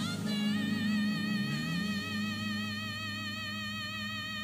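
A female singer holding one long, high belted note with steady vibrato over band accompaniment in a live performance recording.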